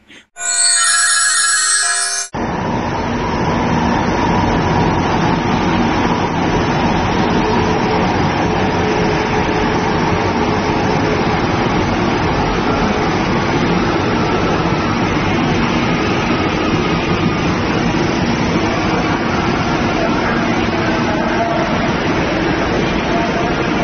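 A brief music sting lasting about two seconds. Then a metro passenger train running past along a station platform, a steady loud rumble of wheels and running gear with a faint whine.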